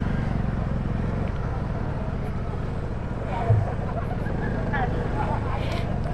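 Yamaha FZ25 motorcycle's single-cylinder engine running steadily at low revs as the bike rolls slowly, with a short louder bump about halfway through.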